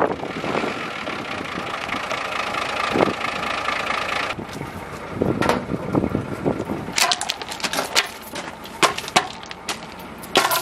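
Nissan forklift engine running steadily for about four seconds. Then come footsteps crunching on gravel and a wooden board being set down against a tyre, with sharp clicks of stones.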